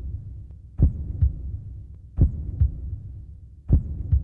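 Heartbeat sound effect: low double thumps, lub-dub, repeating about every second and a half, three beats in all over a faint low hum.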